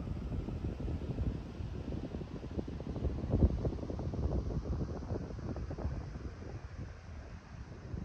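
Wind buffeting the microphone: an uneven low rumble that comes and goes in gusts, strongest about three and a half seconds in.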